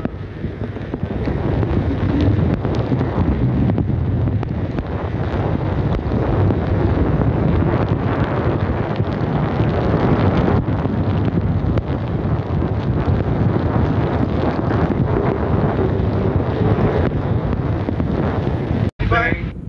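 Steady, loud rush of storm wind buffeting the microphone, mixed with rain and tyres hissing on a flooded road, heard from inside a moving car.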